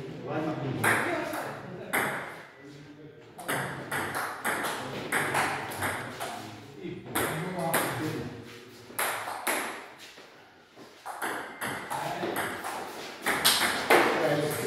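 Table tennis rallies: the ball clicking sharply on the table and off the players' paddles in quick, irregular succession, with a brief lull a little past the middle.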